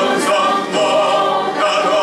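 A man's voice singing a hymn, with long held notes that waver with vibrato.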